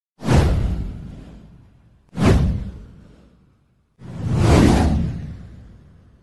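Three whoosh sound effects for an animated title card, about two seconds apart. Each comes in sharply and fades away; the third swells in more gradually.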